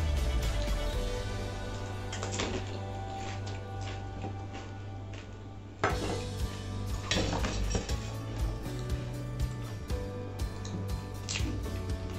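Stainless steel plates and bowls clinking a few times as puris are picked up and a plate is moved; the sharpest clink comes about six seconds in. Background music runs underneath.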